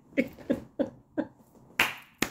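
A woman laughing in short, quick pulses, about three a second, with a sharp snap near the end.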